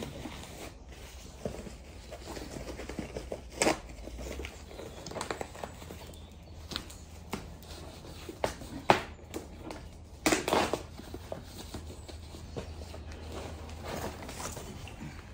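Plastic bag wrapping rustling and crinkling as it is pulled off a tower fan's motor base, with a few sharper snaps and knocks scattered through, the loudest about nine seconds in.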